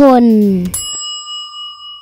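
A single bell ding that strikes suddenly about three-quarters of a second in and rings on, fading slowly. Just before it, a child's voice finishes a word.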